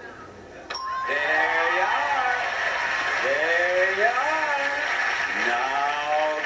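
A game-show bell dings about a second in as the drawn zero lights up as the correct second digit. Studio audience applause and cheering follow.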